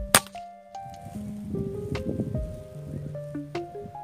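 A single sharp crack from a PCP air rifle firing, about a quarter second in and the loudest sound, over background music.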